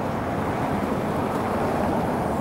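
Steady low rumble of city street traffic, with no distinct events.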